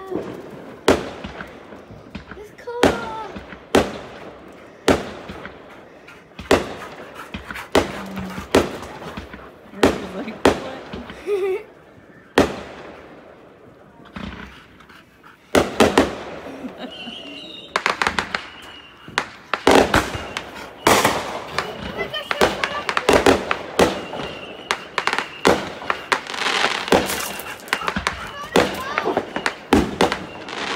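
Consumer fireworks going off in the distance: a series of separate bangs about a second apart, thickening from about halfway into rapid bangs, crackling and popping. A thin, steady high tone runs through the later part.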